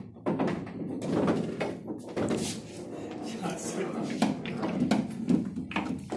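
Voices talking in a small room, a steady stretch of untranscribed chatter with a couple of sharp knocks in the second half.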